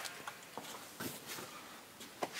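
A few faint clicks and light taps over a quiet background, from hands working at the open cab door and dash of a semi truck.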